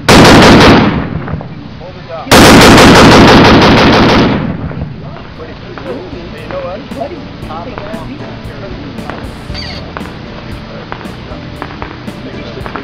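Tripod-mounted machine gun firing on full auto: a short burst right at the start, then a longer burst of about two seconds, fired in rapid succession.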